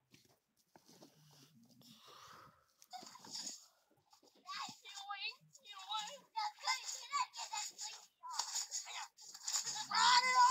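Children's voices, high-pitched shouting and chatter in short broken bursts, begin about four and a half seconds in and carry on to the end. Before that there is only a faint low rumble.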